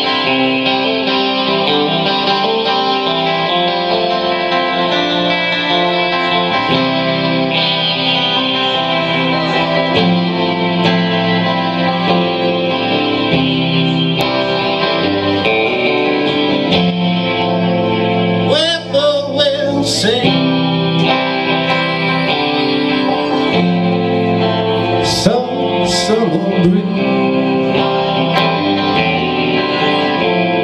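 A solo electric guitar strummed live through an amplifier, with a man's voice singing a couple of phrases past the middle.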